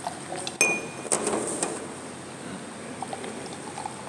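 Glass and metal tableware clinking: a sharp clink with a short ring about half a second in, then a few more knocks and a brief liquid sound.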